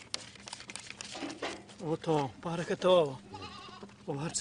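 Goats bleating, a run of wavering calls in the second half, the loudest about two and three seconds in.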